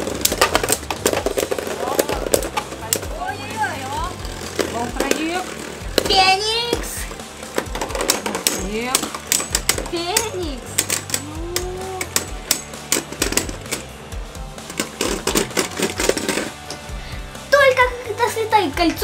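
Two Beyblade Burst spinning tops, Dead Phoenix and Cho-Z Valkyrie, whirring and repeatedly clashing in a plastic stadium, a rapid clatter of sharp hits, with background music and voices over it.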